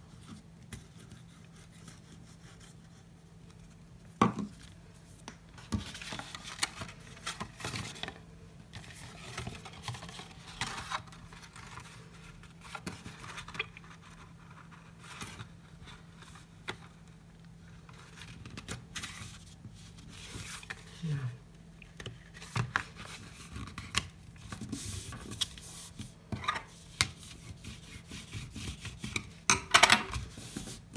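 Blue cardstock being glued, folded and pressed flat by hand on a hard work surface: intermittent paper rustles, rubbing and sharp taps, one louder tap about four seconds in. A faint steady low hum runs underneath.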